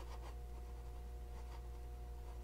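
Gold-nibbed Sheaffer Balance fountain pen scratching faintly across paper in a few short strokes as a word is written, over a steady low hum.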